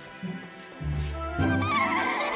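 Cartoon horses whinnying over background music; a wavering whinny starts about two-thirds of the way in and is the loudest sound.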